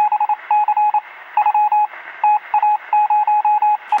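Morse-code-style electronic beeping, used as a news sting: a single mid-pitched tone keyed on and off in an uneven run of short and longer beeps. It plays over a thin, hissy, radio-like background.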